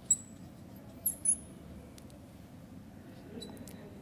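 Chalk squeaking on a blackboard while writing: a short high squeak right at the start, two more about a second in, then a few faint chalk taps over a low room hum.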